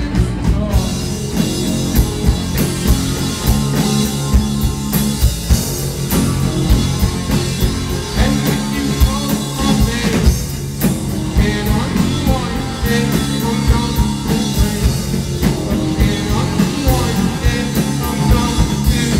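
Indie rock band playing live: electric guitar, bass and drum kit, with a man singing into a handheld microphone. Heard from within the crowd of a small club.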